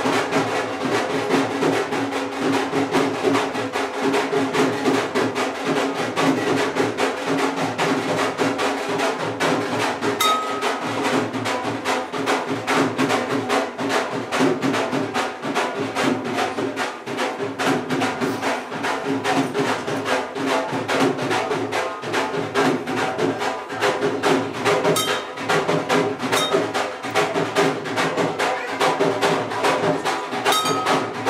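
Devotional music with fast, steady percussion throughout. A hanging temple bell rings briefly about ten seconds in.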